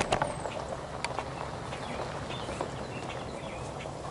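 Steady noise of road traffic, the tyre and engine noise of vehicles passing on the road, with a few faint ticks.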